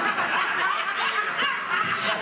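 A group of women laughing together at a dinner table.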